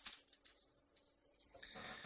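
Faint rustling with a few light clicks, then a short intake of breath near the end.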